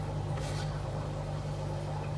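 A steady low hum with no other sound over it.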